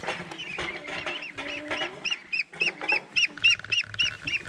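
Month-old Moulard ducks calling in a rapid series of short, high-pitched notes that rise and fall, about three or four a second, louder over the last two seconds while one duck is caught and held.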